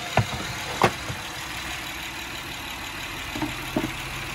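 Plastic engine cover being handled and lifted off, with a couple of sharp clicks in the first second and a couple of lighter knocks near the end, over a steady low hum.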